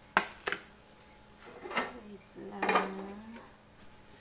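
A metal cooking utensil clinks sharply twice against a wok or plate, then clatters again, with a short wordless voice sound near the middle.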